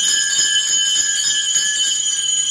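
Temple bells ringing continuously at a steady level during the puja offering, a bright, shimmering metallic ringing without pause.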